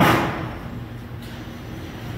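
A single sharp bang of sheet-metal duct work right at the start, dying away over about half a second, over a steady low machinery hum.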